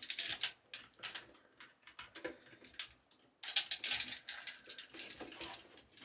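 Hard plastic clicking and creaking as fingers force an upgrade kit's neck-joint tab into its slot on a Transformers figure. Light, scattered clicks thin out in the middle and then come thicker for the last couple of seconds.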